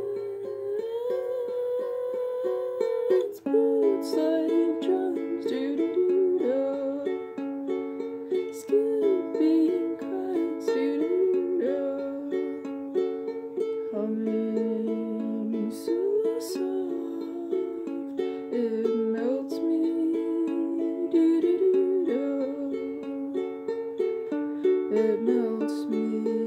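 Ukulele music: a steady run of plucked notes and chords with a gliding melody line over it.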